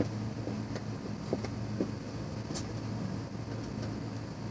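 A steady low hum with a few faint, scattered clicks and knocks, such as someone moving about and handling objects.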